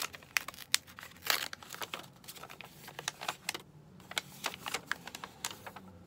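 A folded paper sheet crinkling and crackling in quick, irregular bursts as it is worked open and unfolded by hand.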